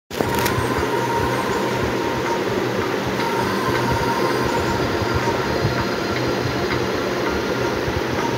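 Steady rumble of a car driving, with road and engine noise heard from inside the cabin.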